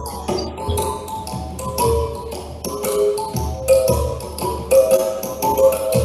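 Mouth bow played: its string struck rapidly with a stick in a fast, even tapping, while the player's mouth picks out shifting overtones that make a melody over a low pulse.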